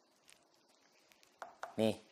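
A pause between a man's sentences: near silence with a few faint clicks, a small cluster of them about one and a half seconds in. A single short spoken word comes near the end.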